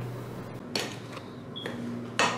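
Faint kitchen handling sounds from a plastic jug and glass mixing bowl as egg whites are poured, with a soft knock about three-quarters of a second in, over a low steady hum.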